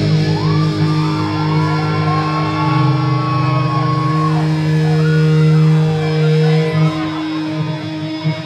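Heavy metal band playing live: distorted electric guitars and bass hold long low notes while a higher guitar line bends and slides in pitch above them. The low notes stop near the end.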